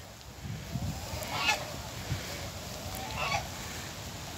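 Geese honking faintly in the distance, two short calls, about a second and a half in and again near the end.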